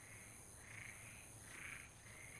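Faint night ambience: a frog calling, three short croaks less than a second apart.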